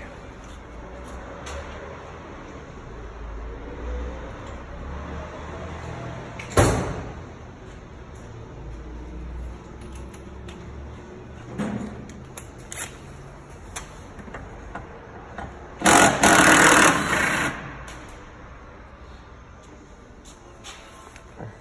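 Hand-tool work on brake line fittings with a line wrench: a sharp metallic knock about six and a half seconds in and a few lighter clicks later. Near the end comes the loudest sound, a rough rustling scrape lasting about a second and a half.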